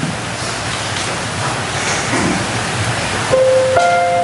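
A steady rushing hiss, then about three seconds in a piano begins playing single sustained notes, one and then a higher one, opening a choir anthem's introduction.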